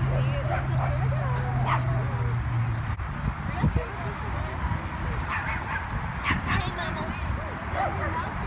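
Several small dogs yipping and whining in short wavering calls, with people talking in the background. A low steady hum stops about three seconds in.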